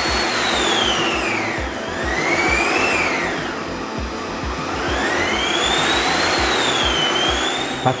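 Cattani Turbosmart dental suction machine running, a rushing air noise with a motor whine that falls in pitch, rises again and falls once more as its inverter varies the motor speed to deliver only the suction needed.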